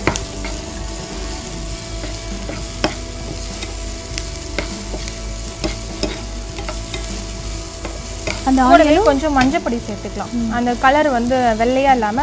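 Chopped onions sizzling in a frying pan while a perforated metal spoon stirs them, with frequent clicks and scrapes of the spoon against the pan. A voice comes in about eight seconds in and is louder than the frying.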